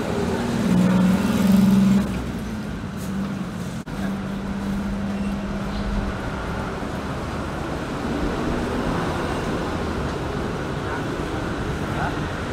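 Street traffic noise: a steady hum of passing and idling motor vehicles, with an engine drone that comes and goes.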